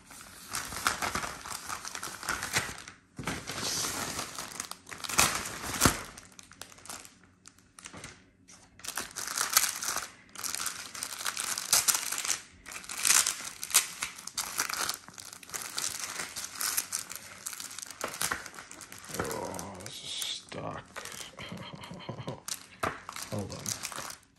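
Thin plastic mailer bag and clear plastic sleeve crinkling and rustling in irregular bursts as a parcel is unwrapped and a folded shirt is slid out.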